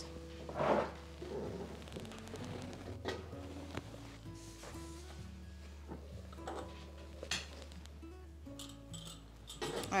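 Soft background music of held notes that change pitch every second or so. A few faint knocks come from hands kneading dough in a glass mixing bowl.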